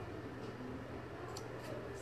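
Sharp scissors snipping yarn to trim a pom-pom round: two or three faint, quick snips in the second half, over a low steady room hum.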